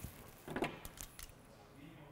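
A few faint, sharp clicks and light rattles from hands handling wiring and a small plastic crimp connector.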